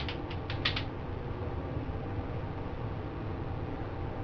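Several quick small clicks in about the first second, from something fiddled in the hands, then a steady low room hum.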